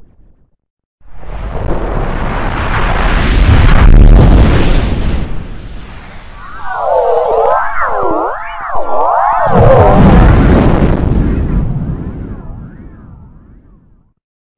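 Heavily distorted, effects-processed logo audio: a loud, rumbling, explosion-like noise blast starts about a second in, then a cluster of warbling tones that swoop up and down, then a second loud blast that fades away before the end.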